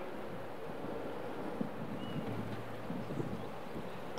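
Quiet, steady outdoor background noise with a low rumble, in a pause between spoken phrases. A faint, short high chirp comes about halfway through.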